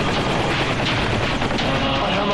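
Loud, continuous rattling roar of a small aircraft's engine, steady throughout and fluttering rapidly.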